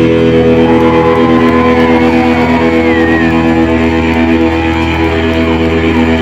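Loud electric guitars and bass sustaining a droning chord at the close of a rock song, with no drum beat. A thin high tone bends in pitch over the top of the chord.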